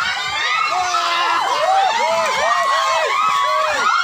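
Crowd of villagers, children among them, shouting and cheering with many voices at once; through the middle one voice repeats a short rising-and-falling call about three times a second.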